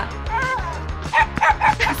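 Small white terrier (West Highland white terrier) barking in several short, high yips over background music.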